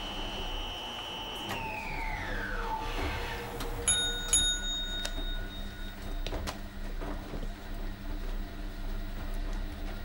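A washing machine's high spin whine holds steady, then winds down in pitch about a second and a half in. A couple of seconds later two quick bell dings ring out and fade over about two seconds, marking the end of the cycle.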